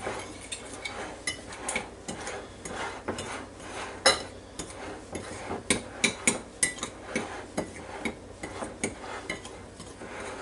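A small fork stirring flour and seasonings in a ceramic bowl: irregular clinks and scrapes of the tines against the dish, the sharpest about four seconds in.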